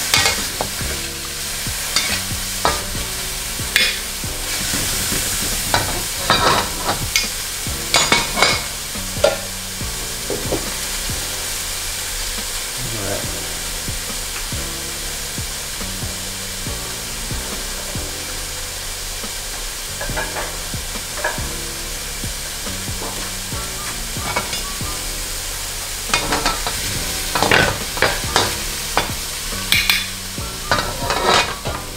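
Food sizzling in a hot wok while a metal spatula and ladle scrape and clack against the pan in quick, irregular strokes as it is stir-fried. The clatter dies away for a long stretch in the middle while the sizzle goes on, then picks up again near the end.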